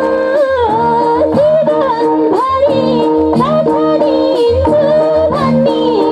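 A woman singing a Nepali dohori folk song into a microphone, her voice sliding and ornamented, over a steady harmonium drone and regular beats of a madal drum, heard through a PA.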